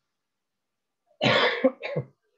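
A man coughing: a harsh cough about a second in, then a shorter second cough near the end.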